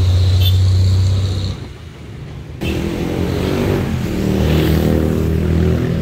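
Road traffic engines: a loud, steady low engine hum for the first second and a half, then after a short lull another vehicle engine whose pitch shifts up and down.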